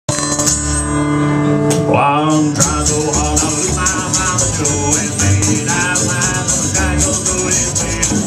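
Live roots band playing: acoustic guitar, upright bass and washboard keep a steady beat while a harmonica holds long notes, then plays a wavering, bending melody from about two seconds in.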